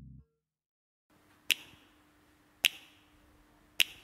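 The tail of one song's low sustained notes cuts off, a moment of silence follows, then three sharp finger snaps about a second apart count in the next track of the R&B mix.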